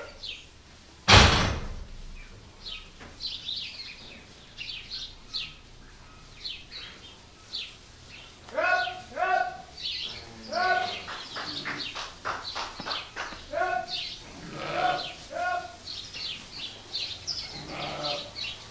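Sheep bleating repeatedly from about halfway through, in a barn full of small birds chirping. A single loud bang comes about a second in.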